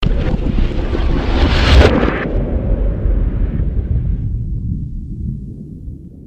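A loud rushing, rumbling noise like wind or surf that starts abruptly and fades away; its hiss drops out about two seconds in, leaving a low rumble that dies down.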